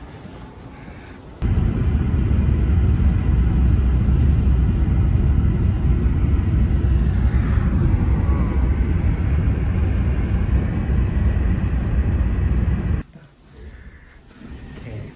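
Loud, steady low rumble of a moving vehicle heard from inside it. It starts abruptly about a second and a half in and cuts off abruptly about a second before the end, with quieter ambience on either side.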